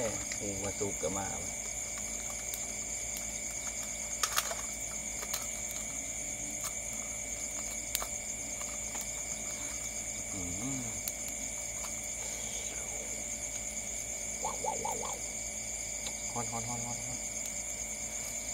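Steady, high-pitched chorus of night insects, crickets trilling without a break. A few sharp clicks cut through it, the loudest about four seconds in.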